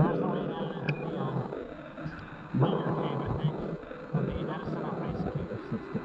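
A person's voice making unclear vocal sounds in two stretches, one at the start and one about two and a half seconds in.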